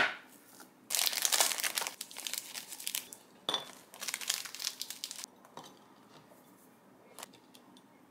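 Plastic packaging crinkling in two long handfuls, typical of a bread wrapper being opened and slices of packaged whole wheat toast taken out. It follows a sharp click at the start, like a wooden spoon knocking a ceramic bowl, and a few small taps come near the end.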